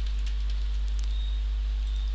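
Steady low electrical hum with a faint thin high whine, the recording's background noise, broken by a few faint clicks.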